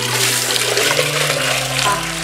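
Water pouring in a steady stream from a height into a clay (earthenware) water pot, splashing as it fills; it starts suddenly at the beginning. Soft background music plays underneath.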